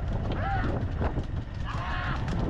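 Short, high, arching cries urging on a pair of racing bullocks, repeated every half second or so, over a steady low rumble of the moving cart and chase vehicle.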